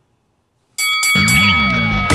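A brief silence, then the show's closing theme music cuts in suddenly about three quarters of a second in. It opens with a few sharp hits and ringing tones, and heavy low notes build under them.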